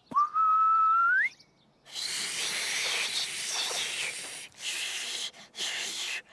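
Lip whistling: one clear note held for about a second that rises at the end. Then breathy blowing with no note, a long puff and two shorter ones: failed tries at whistling.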